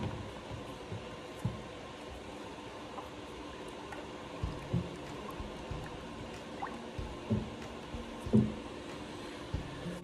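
A silicone spatula stirring liquid soap batter of melted oils and goat milk in a plastic container: quiet sloshing, with a few soft knocks of the spatula against the container.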